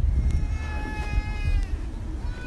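A baby crying: one drawn-out, steady wail lasting about a second, over a low rumble of background noise.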